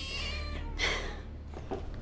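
A baby crying in short, high, wavering wails, fading toward the end.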